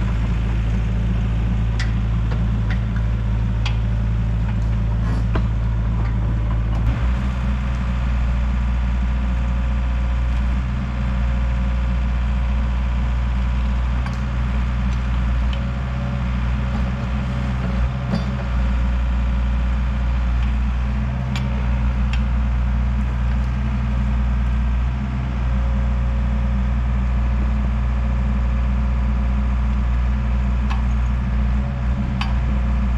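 Diesel excavator engine idling steadily while it warms up, with a few light clicks. About seven seconds in the sound changes to the tracked excavator running among the trees.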